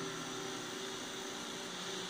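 The last strummed chord of an acoustic guitar dying away faintly under a steady hiss.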